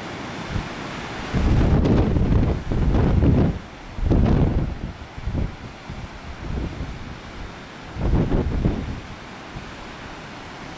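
Wind buffeting the microphone in several loud, low gusts, the strongest in the first half and another near the end, over a steady wash of breaking surf.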